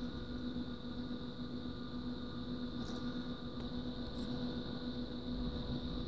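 Quiet, steady electrical hum with a thin high whine, broken by a few faint clicks, most likely the metal binder clips being fitted to the edge of the glass print bed.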